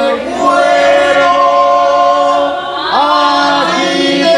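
A congregation singing a praise hymn together, many voices holding long notes, with a rising slide into a new phrase about three seconds in.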